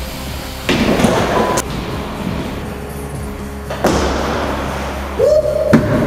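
Background music with a steady bed, broken by sudden heavy thuds about a second in and again near four seconds.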